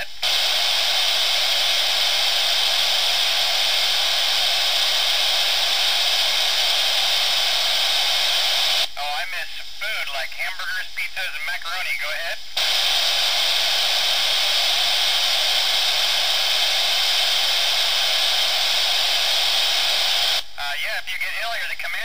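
Loud, steady FM radio static hiss from a receiver tuned to the International Space Station's downlink, heard while the station is not transmitting. About nine seconds in, the hiss drops out for a few seconds as a faint, unclear voice comes through, then returns. Near the end it cuts out again as the astronaut's voice comes back on the air.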